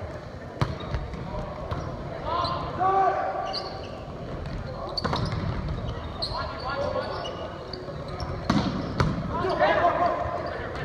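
Volleyball being struck in a rally: sharp slaps of hands on the ball about half a second in, around five seconds and twice near the end, with players shouting calls in between, echoing in a gym.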